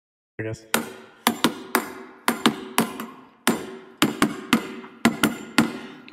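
Intro of a hip-hop track: a percussive beat of sharp knocking hits, two to three a second in an uneven pattern, over a steady low note, starting about a third of a second in after silence.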